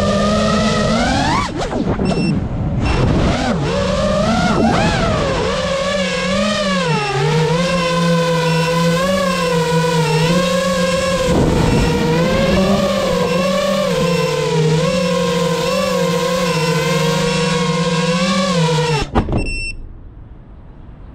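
Small FPV racing quadcopter's brushless motors and propellers whining, heard from the camera on board, the pitch rising and falling with the throttle. The whine dips briefly about two seconds in and cuts off abruptly near the end.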